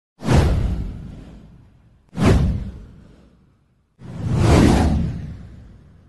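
Three whoosh sound effects for an intro title animation. The first two hit suddenly and fade over about a second and a half. The third swells up and then fades out.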